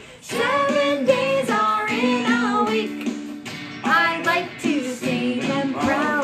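A children's days-of-the-week song playing: a sung melody in short phrases with musical backing, after a brief gap at the very start.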